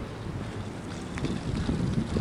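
Wind buffeting the microphone, an uneven low rumble that gusts harder in the second half.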